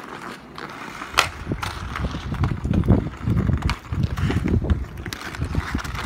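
Ice skates scraping and striding on an outdoor rink, with sharp clacks of hockey sticks hitting a puck, the loudest about a second in. An uneven low rumble runs through the middle.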